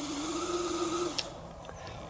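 Radio-controlled 6x6 truck's electric drivetrain whining as it pulls a loaded lowboy trailer through tall grass. The steady, slightly wavering whine drops away about a second in.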